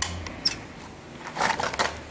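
Footsteps crunching over broken concrete rubble and debris: a sharp click at the start and another about half a second in, then a short gritty crunch about a second and a half in.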